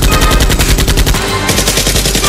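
Rapid automatic-gunfire sound effects, a fast unbroken stream of shots, dubbed over the blaster firing, with background music underneath.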